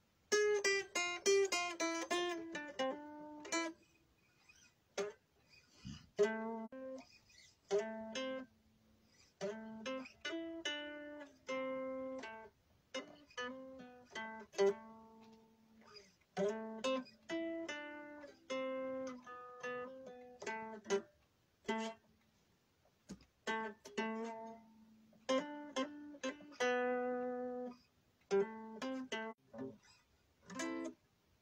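Guitar picked note by note: a quick run of notes at the start, then short phrases of single notes and chords separated by brief silences.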